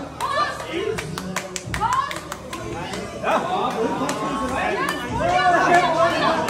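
Several onlookers talking and calling out over each other, with scattered sharp claps in the first two seconds and again near the end.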